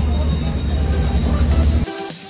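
Mercedes-Benz O-500U city bus's Bluetec 5 diesel engine running with a deep, steady rumble, cut off abruptly near the end by electronic music.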